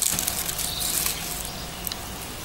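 Soft, irregular rustling and crumbling of soil as gloved hands set a bulb plant's clump of earth down into a planting hole, with a few small clicks.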